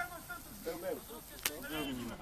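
Players' voices calling faintly on a football pitch, with a single sharp knock about one and a half seconds in from a football being struck.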